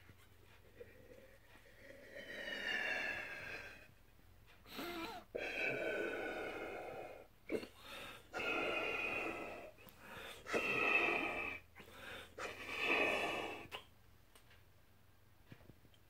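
A man blowing by mouth into a soft silicone elephant balloon through its trunk: five long blows with short breaks between, each with a whistling tone as air is forced into the balloon.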